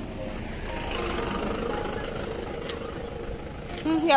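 A motor vehicle passing along the road: its engine and tyre noise swells about a second in, then fades toward the end.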